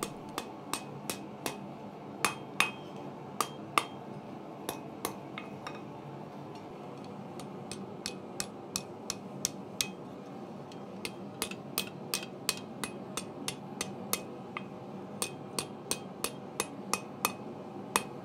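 Hand hammer striking hot mild steel on a small 30 kg Acciaio anvil: a run of sharp, short blows, about two to three a second, with a pause of about two seconds midway. The blows are closing the hot end of the bar up into a tight spiral scroll.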